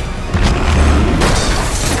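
Cinematic trailer music with a deep, heavy boom hit starting about half a second in, followed by a short burst of crashing noise.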